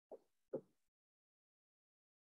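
Near silence broken by two brief soft pops about half a second apart, near the start.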